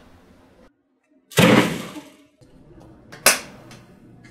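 A TV remote smashed down hard: one loud crash about a second and a half in, dying away over most of a second, then a single sharp crack near the end.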